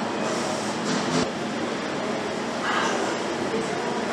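Factory-floor machine noise in an electric-drive assembly line: a steady din with a single knock about a second in and short hisses.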